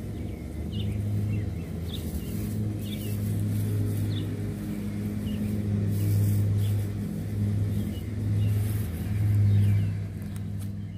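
A motor running with a steady low hum that swells and eases in loudness, with short bird chirps over it.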